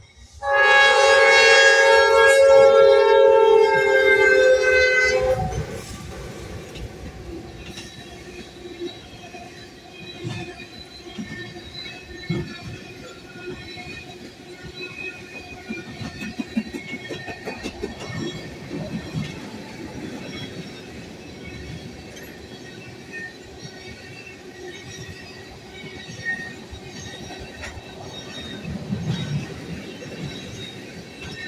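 Norfolk Southern freight locomotive's air horn sounding one long blast of about five seconds. The train's tank cars then roll past with steady wheel noise, irregular clicks over the rail joints and a faint high wheel squeal.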